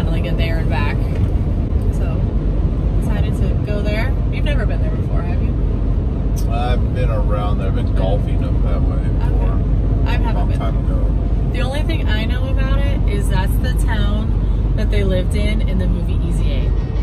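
Steady low rumble of road and engine noise inside a moving car's cabin, under people talking.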